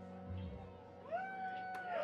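A live band's last chord fading away, then about a second in a long, high whoop from one audience member.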